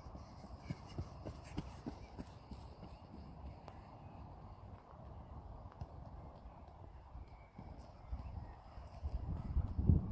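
Wind rumbling on a phone microphone over grass, with soft thuds of running feet and touches on a football, about three a second early on; the wind grows louder near the end.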